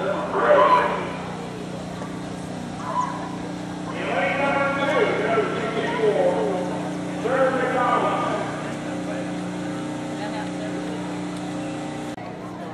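Indistinct voices of people talking close by, in a few short stretches, over a steady low hum.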